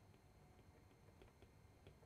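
Near silence: room tone with a few faint, irregular ticks from a stylus tapping a tablet while writing.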